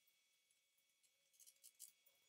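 Near silence, with a few faint, quick clicks about one and a half seconds in, from hands handling the bookcase's panels.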